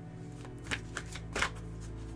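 A deck of tarot cards being shuffled by hand, the cards rasping against each other in about four short strokes.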